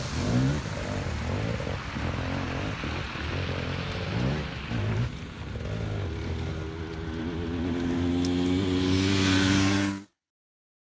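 Dirt bike engines revving, the pitch rising and falling again and again. From about seven seconds in, one engine holds a steadier note that slowly climbs in pitch and grows louder.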